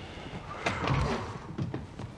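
Quiet room tone in a pause between lines, with two faint clicks in quick succession about two-thirds of a second in.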